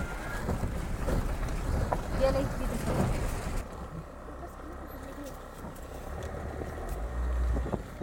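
Low rumble of wind on the microphone mixed with a vehicle moving along the road; the sound changes abruptly about a third of the way in, and a stronger gust rumbles near the end.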